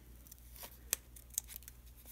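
Scissors snipping through a folded stack of four paper tags, a few short, sharp snips as the corner is rounded off, the loudest about a second in.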